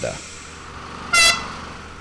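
Miniature train whistle giving one short, high-pitched toot about a second in, over a faint low steady hum.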